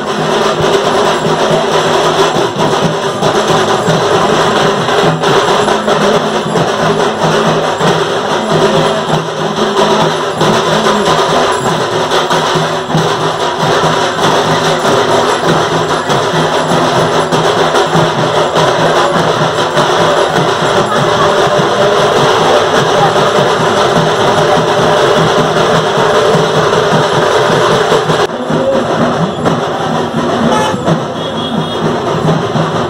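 Loud, continuous drumming with music, going on without a break; the sound changes slightly about two seconds before the end.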